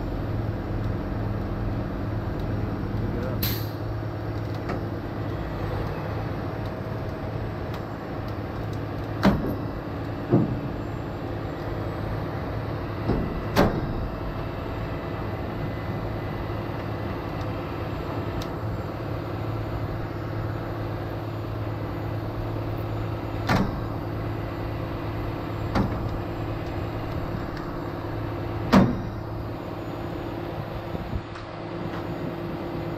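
Heavy rotator wrecker's diesel engine running steadily to power the boom as it lifts a leaning loaded trailer by its axles, with a handful of short sharp knocks scattered through.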